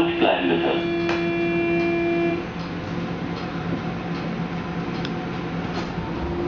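Door-closing warning signal of a Berlin U-Bahn F87 train: a steady buzzing tone held for about two and a half seconds and then cut off, with a brief voice at its start and a single knock about a second in.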